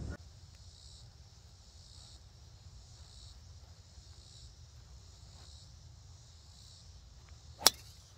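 A golf driver striking a teed ball: one sharp, loud crack near the end.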